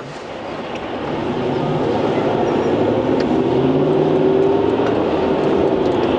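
Car engine and road noise heard from inside the cabin as the car pulls away from a stop and picks up speed. It grows louder over the first two seconds, then runs steadily.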